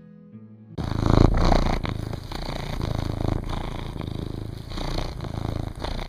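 Background music cuts off under a second in, followed by a domestic cat purring loudly and steadily.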